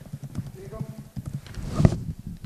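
Rapid, irregular knocking and clicking handling noise on a press-conference microphone, growing louder toward a peak near the end, with a faint voice in the background.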